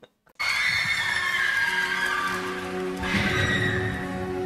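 Playback of a live rock concert recording starts about half a second in, after a brief silence: the band's intro with held, sustained chords.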